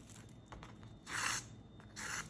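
A short rasping swish about a second in: stitching thread being drawn through the bundled pine needle coil.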